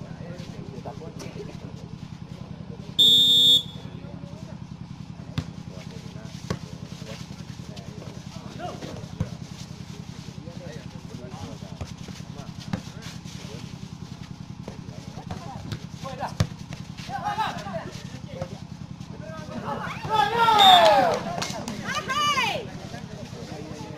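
Outdoor volleyball match: a referee's whistle blows briefly about three seconds in, sharp ball hits sound now and then through the rally, and spectators shout loudly near the end, all over a steady low hum.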